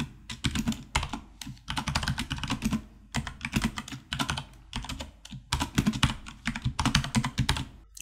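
Typing on a computer keyboard: fast runs of keystrokes, each run lasting a second or so, broken by short pauses.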